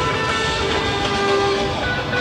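Live rock band playing, with several notes held steady over a dense backing of drums and bass.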